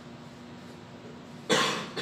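A man coughing during a pause in his talk: one sharp, loud cough about a second and a half in, followed by a smaller second cough.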